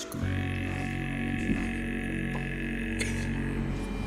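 Metal sea-shanty song in which a bass singer holds one very low, steady note over the band; it comes in just after the start and is held until near the end.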